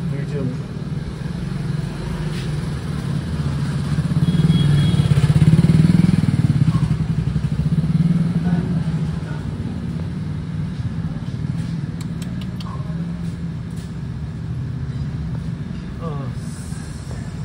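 A motor vehicle's engine running close by, a steady low drone that swells to its loudest about five seconds in and eases off after about eight seconds.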